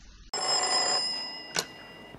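Desk telephone bell ringing once for about a second, starting suddenly, then fading, with a sharp click just after as the handset is lifted.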